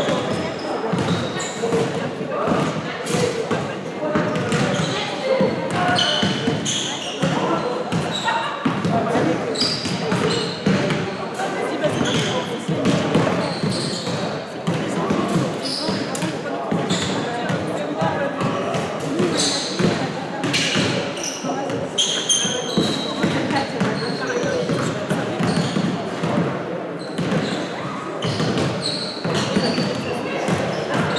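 Basketball game heard in an echoing sports hall: the ball bouncing on the court, short high squeaks of basketball shoes, and players' indistinct voices.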